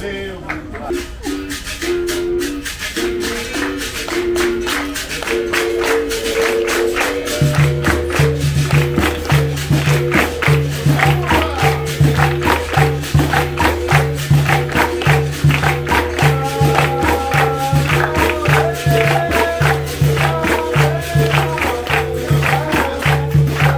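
A capoeira bateria playing. Berimbaus sound a stepping two-note rhythm, with pandeiro jingles and caxixi rattles throughout. About seven seconds in, the atabaque drum comes in with a steady beat, and a voice begins to sing near the end.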